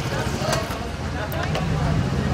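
A vehicle engine idling: a steady low hum, with faint voices over it.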